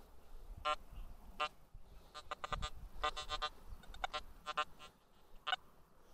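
Metal detector giving a series of short, buzzy beeps as its coil sweeps back and forth over the dug soil. These are responses to small iron scraps in the ground. The beeps come irregularly, several in quick succession around the middle.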